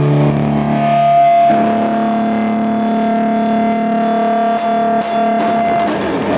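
Distorted electric guitar holding long, ringing chords in a live black metal performance, changing chord about a second and a half in. A few short cymbal hits come near the end.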